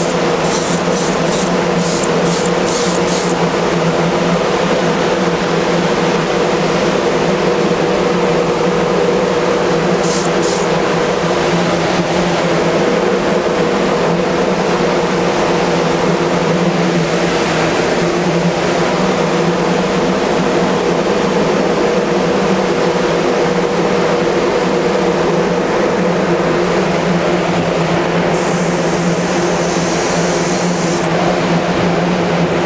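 Spray booth exhaust fan running with a steady hum and rushing noise. Over it, an HVLP spray gun gives short hissing bursts of spray: a quick run of about six in the first few seconds, two about ten seconds in, and a longer burst near the end.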